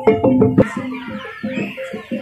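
Javanese gamelan music of the kind played for a barongan dance: pitched gong-chime and drum strokes in a quick steady beat. About half a second in the music drops suddenly in level and continues quieter.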